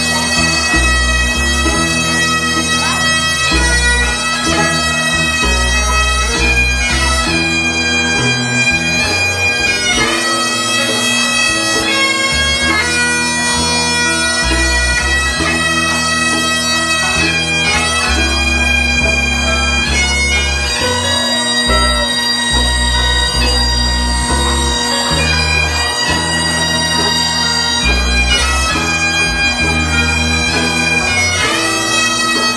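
Bagpipes playing a tune over their steady drone, live with a band: guitars, with low bass notes changing about every second underneath.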